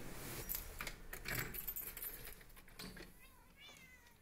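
Scattered jangling, clinking clicks and a short cat meow near the end, fading out as an electronic track closes.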